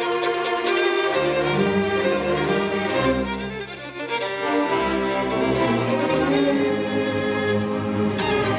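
A string orchestra playing a classical piece: violins carry the melody over cellos. The music briefly softens about three and a half seconds in, then returns to full strength.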